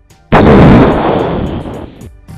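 Grenade explosion sound effect: a sudden loud blast about a third of a second in, then fading away slowly through the rest.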